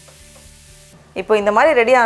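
Grated cauliflower stuffing being stirred in a stainless steel pan: a faint, even frying sizzle that stops just before a second in. A loud voice then takes over.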